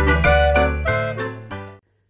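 Intro music with jingling bells, tinkling notes and bass, fading out and stopping shortly before the end.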